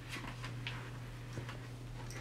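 A few faint soft clicks and rustles of a paperback picture book's pages being handled, over a steady low hum.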